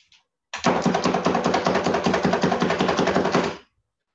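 Food chopper running in a single burst of about three seconds as it chops fresh basil leaves, with a fast, even rattle throughout; it starts about half a second in and stops sharply.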